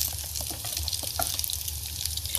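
Steady sizzle of potato-and-semolina medallions frying in a pan, with pineapple juice being poured from a glass bottle into a blender jug.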